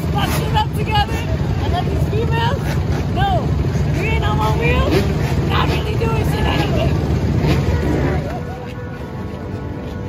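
Dirt bike and motorcycle engines idling, a steady low rumble, with several people's voices talking over it. About 8 seconds in, the rumble drops away and the sound gets quieter.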